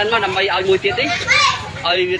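High-pitched children's voices talking and calling out.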